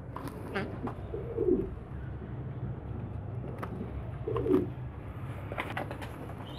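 Domestic pigeon cooing twice, two low soft coos about a second in and again about four and a half seconds in, with a few faint clicks in between.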